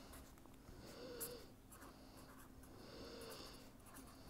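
Faint scratching of a pen writing on paper, in two short runs of strokes.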